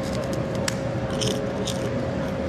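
A thick fish cracker (kerupuk ikan) crunching as it is bitten and chewed, with a few sharp, separate crunches.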